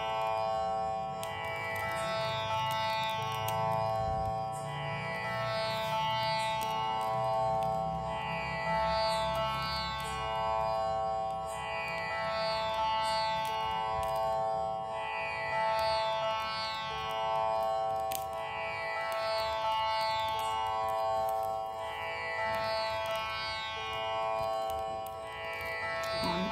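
Instrumental background music in an Indian classical style: a steady held drone under a short string phrase that comes round about every two seconds.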